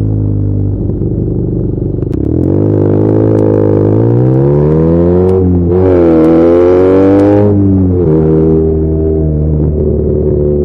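BMW R nineT's boxer twin, fitted with aftermarket header pipes and its exhaust flapper valve removed, revving under acceleration. Engine speed climbs from about two seconds in, dips briefly, climbs again to its loudest, then falls off near the end as the throttle closes and settles to a steady lower pitch.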